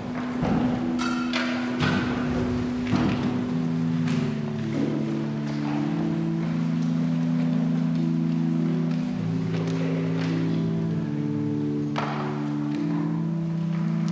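Organ playing slow, soft held chords. A few knocks and clinks of the altar vessels being handled come in the first few seconds and again near the end.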